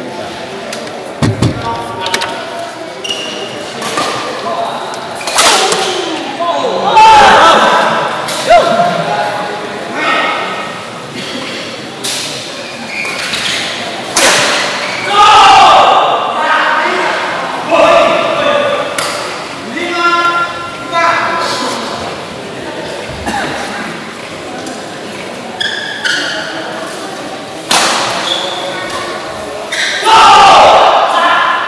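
Badminton doubles rally in an echoing sports hall: irregular sharp racket strikes on the shuttlecock and thuds of shoes on the court, mixed with players' shouts and voices.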